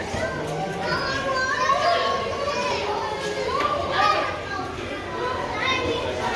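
Children's voices, talking and calling out, with several voices at once, in an indoor hall.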